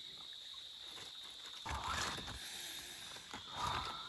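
Aluminium foil and leaf wrapping crinkling and rustling in two bursts, about one and a half and three and a half seconds in, as a foil-wrapped parcel of cooked food is pulled open. A steady high insect drone runs underneath.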